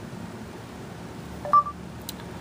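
Google voice search's short electronic "ready to listen" beep from an Android phone's speaker, once, about a second and a half in, over faint room hum.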